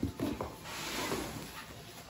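A knock at the start, then cardboard rustling and plastic wrap crinkling as a plastic-wrapped skateboard is slid out of its long cardboard box.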